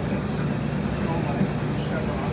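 A steady low machine hum with a faint voice in the background.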